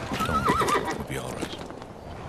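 A horse whinnying once, a short quavering call in the first second.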